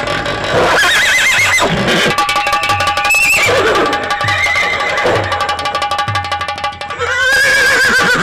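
Recorded horse whinnies played as a stage sound effect over music with a steady low drum beat, with one whinny about a second in and another near the end.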